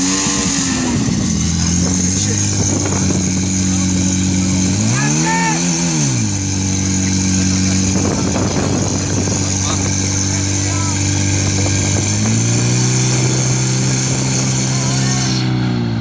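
Portable fire pump's engine running hard, revved up and back down twice, once right at the start and again about five seconds in, then stepping up to a steadier higher speed about twelve seconds in as it pumps water out to the hose lines.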